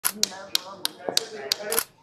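A quick series of sharp taps, about seven in two seconds at a fairly even pace, with voices talking underneath.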